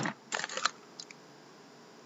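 Cardboard hockey card boxes being handled, giving a short cluster of light clicks and scrapes about half a second in and a single faint tick at about a second.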